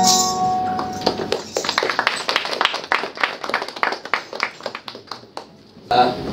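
A group's held sung note ends about a second in. Scattered hand-clapping from a small audience follows and fades away.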